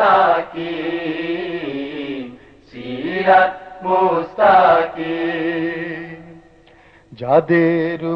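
A solo voice singing a Bangla Islamic hamd in long, drawn-out held notes, with a short break about two seconds in and a brief pause shortly before the next line starts near the end.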